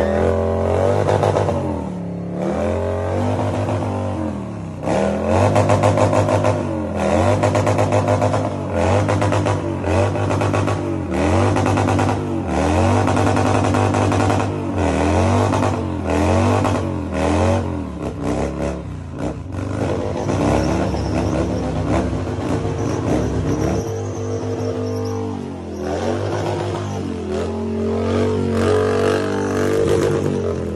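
A cruiser motorcycle doing a burnout, its engine revved hard over and over, the pitch rising and falling about once a second as the rear tyre spins and smokes on concrete. Near the end comes a steadier stretch at held revs.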